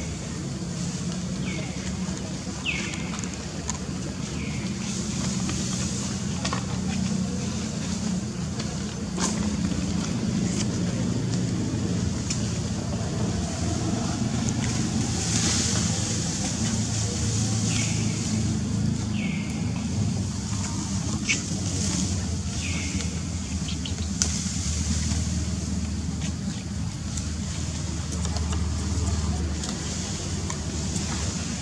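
Steady low rumble of a running engine, dropping deeper about two-thirds of the way through. Over it come short high chirps, three near the start and three more around the middle.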